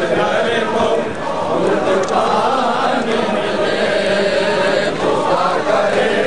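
Many men's voices chanting a nauha, a Shia mourning lament, together in a steady, unbroken stream.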